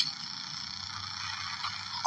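Steady, even background noise with a faint high steady whine and a low hum, with no distinct event.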